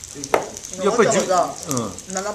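Food sizzling on the table's hot cooking dishes, a steady high hiss, with a sharp click about a third of a second in and voices over it in the second half.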